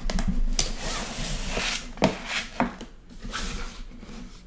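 Cardboard toy-train box being slid out of its printed cardboard sleeve, a rubbing scrape for about two seconds, followed by a couple of light knocks as the box is handled and its lid lifted.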